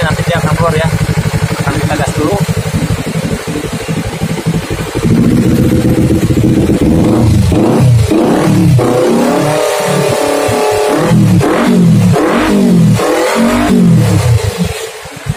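Kawasaki Ninja 250 FI parallel-twin engine idling steadily, then revved in a series of short throttle blips during the second half, its pitch climbing and dropping with each one. It is being run up so the coolant leak at the water pump hose joint shows.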